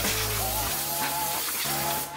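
Steady hiss of a compressed-air blow gun blowing out the engine bay, over background music.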